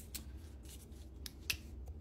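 Several sharp, separate clicks and light handling noise as a handheld UV flashlight is taken out and switched on, the most prominent click about one and a half seconds in.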